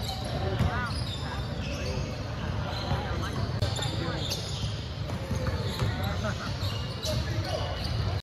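Basketball dribbled and bouncing on a hardwood gym court during a game, a string of sharp knocks, with short high sneaker squeaks and spectators talking in the echoing hall.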